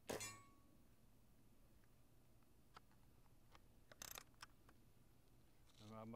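A single shot from a Diana 54 Airking Pro spring-piston air rifle: a sharp report with a brief metallic ring. It is followed by a few faint clicks and a short clatter about four seconds in as the rifle is handled for the next shot.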